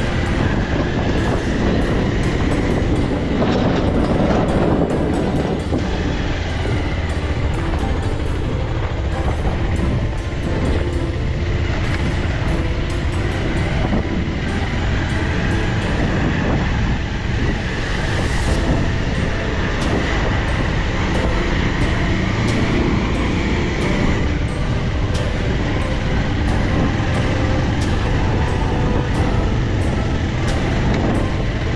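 Motorcycle running over a rough dirt and gravel track, crossing a steel bridge's plank deck at first, with wind noise on the microphone and many short clicks and rattles from the bumpy surface.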